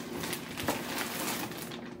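Thin plastic bag crinkling and rustling as yarn cakes are pulled out of it, in a run of small irregular crackles.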